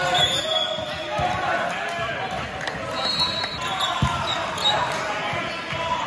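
A volleyball rally: the ball struck sharply by hands twice, about a second in and again near two-thirds through, with sneakers squeaking on the gym floor and players and spectators calling out throughout.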